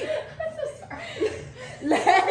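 A small group of people chuckling and laughing in short, scattered bursts, with bits of voice between them.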